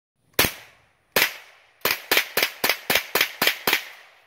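Mossberg 715T semi-automatic .22 LR rifle firing ten shots: two single shots about a second apart, then eight in quick succession at about four a second, each followed by a short echo.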